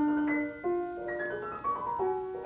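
Solo classical piano playing: chords struck at the start, about half a second in and again near the end, each left to ring and fade.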